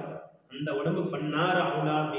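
Only a man's voice, speaking in a sermon-like, chant-like cadence through a headset microphone, with a brief pause about half a second in.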